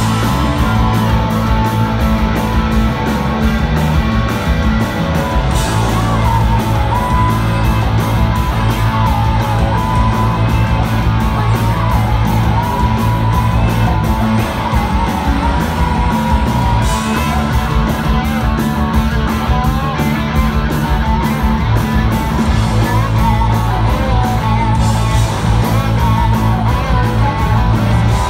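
Live rock band playing loudly: electric guitars, bass and a drum kit keeping a steady beat.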